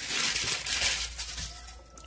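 Plastic packaging rustling and crinkling as it is handled, loudest in the first second and fading off.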